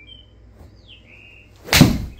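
Golf iron striking a ball off a turf hitting mat: one sharp, loud smack near the end. A few short bird chirps come before it.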